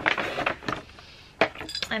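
A ceramic mug being handled, giving a few light clinks and knocks, with a short rustle of paper just after the start.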